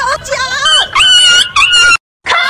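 A boy wailing in a string of high-pitched, wavering cries, the last two the longest and loudest.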